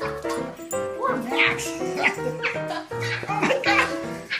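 A dog barking a few times over background music with a steady melody.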